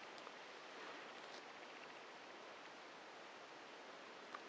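Near silence: a faint steady hiss with a few faint soft ticks, the quiet handling of a knitted toy being hand-stitched with a darning needle.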